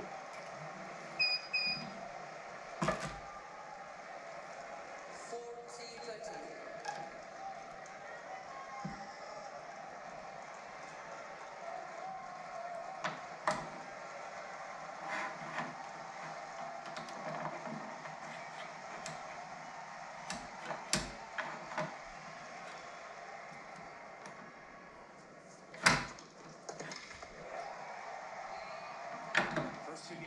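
Scattered sharp clicks and knocks from a Pro's Pro Tomcat MT400 stringing machine's clamps and tensioner as racket strings are pulled and clamped, the loudest near the end. Under them runs a faint murmur from a televised tennis match.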